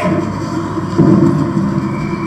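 Soundtrack of a played video heard over a hall's loudspeakers: a boomy, muddy rumble with a louder thud about a second in.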